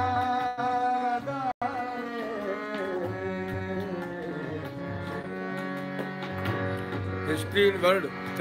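Live Indian light-classical song: a singer holds a long note, then moves through wavering, ornamented phrases over steady instrumental accompaniment and tabla strokes. The sound cuts out for an instant about one and a half seconds in.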